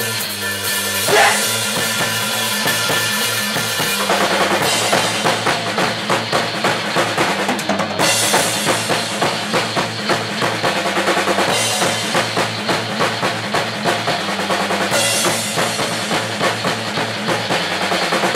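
Live rock band playing an instrumental passage, with the drum kit to the fore over bass guitar. The cymbals and the whole band get fuller and busier about four seconds in.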